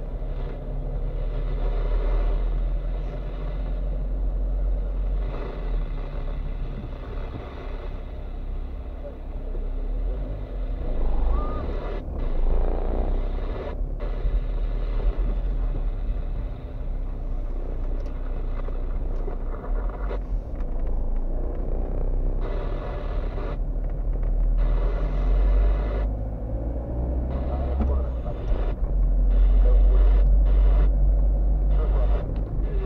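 Engine and road rumble inside a moving car's cabin, heard steadily, with some speech mixed in underneath.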